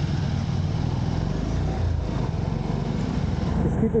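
Motorcycle engine running steadily as the bike rides off, heard close up from a camera mounted on the bike, with some rush of air.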